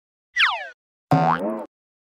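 Cartoon sound effects of the iQIYI animated logo sting: a short whistle-like glide falling in pitch, then a springy boing about a second in.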